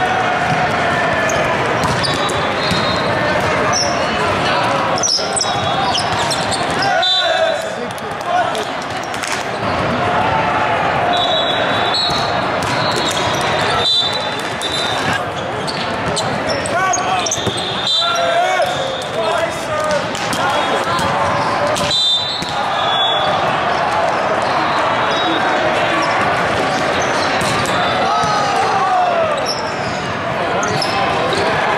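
Volleyball tournament hall ambience: a steady hubbub of many overlapping voices from players and spectators, with repeated thuds of volleyballs being struck and bounced. Short high whistle blasts sound several times, echoing around the large hall.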